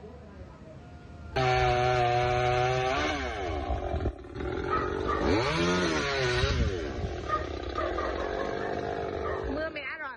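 Chainsaw engine running, coming in loud with a steady note about a second and a half in; midway its pitch sags and recovers, as when it bogs down biting into wood, and it keeps running until just before the end.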